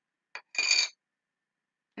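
A light click, then a short, bright scrape with a slight ring, as a small round plastic jar of colorless blender PanPastel is handled.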